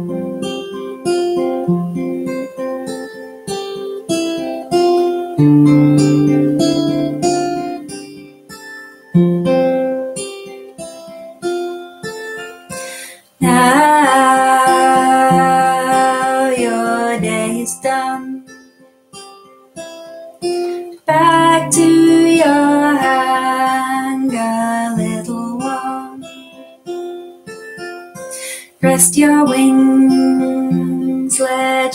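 Acoustic guitar with a capo on the fifth fret playing a picked pattern of single notes, the opening of a lullaby. A woman's voice joins in singing two phrases, the first starting just before halfway and the second about two-thirds of the way through.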